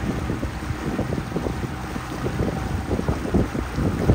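Excursion boat cruising on a lake: the low, steady hum of its engine under gusty wind buffeting the microphone.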